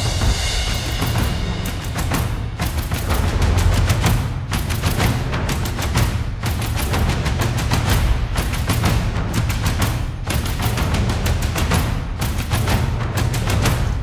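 Isolated percussion stems of an epic orchestral cue playing back: layered timpani, taiko drums, snares and cymbals in a dense, driving rhythm with a heavy low end.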